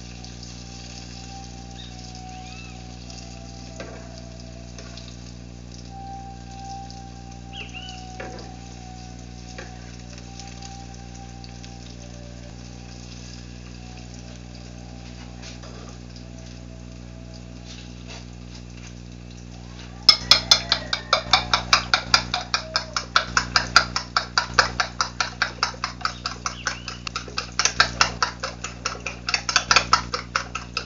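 Food frying in a pan on a wood-fired stove, a faint steady sizzle. About two-thirds of the way in a fork starts beating eggs in a plate: rapid, even clinks of metal on the plate that carry on to the end and are the loudest sound.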